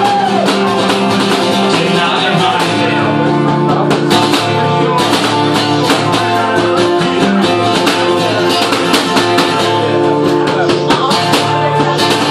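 Acoustic guitar strummed in a steady rhythm, an instrumental passage of a live song; the strumming grows busier about four seconds in.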